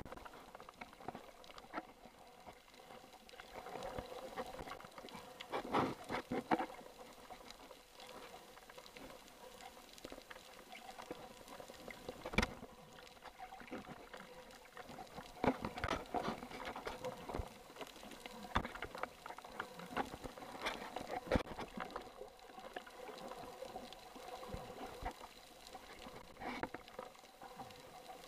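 Underwater sound picked up by a camera in a waterproof housing: irregular clicks and crackles, bunched in clusters, with one sharp knock about halfway through, over a faint steady hum.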